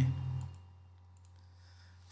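A spoken word trails off, then near silence with a steady low electrical hum and a few faint clicks.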